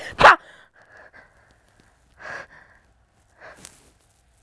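A young woman's sharp shouted "Ha!", then a pause with two short, audible breaths.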